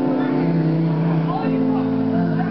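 Live music in a concert hall: low notes held steady and changing to a new chord about one and a half seconds in, with voices rising and falling above them.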